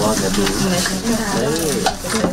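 Brown paper rustling and scraping as it is folded and slid by hand on a worktable, a continuous rough hiss.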